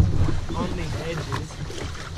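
Wind on the microphone, with an untranscribed voice calling out briefly in the first second and a couple of sharp knocks later on.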